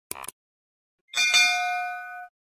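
Subscribe-button animation sound effects: a short click, then about a second in a bright bell chime that rings on with several steady tones.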